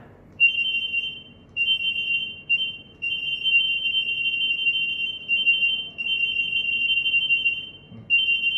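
Zebra DS9908R handheld barcode/RFID scanner beeping over and over as it reads a batch of RFID tags in quick succession. The reads come so fast that the high-pitched beeps run together into long, near-continuous stretches broken by short gaps.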